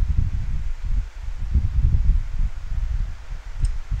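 Low, uneven rumble of wind buffeting the microphone, with a faint click near the end.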